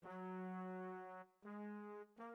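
Native Instruments Session Horns sampled brass section (Full Section patch) played in Kontakt 5: two held chord notes, the second a little higher than the first after a brief gap.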